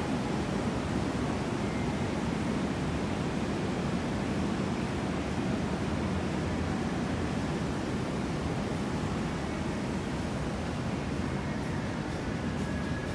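Steady, even background rush of a large, quiet indoor shopping mall: air-handling and room noise with no distinct events.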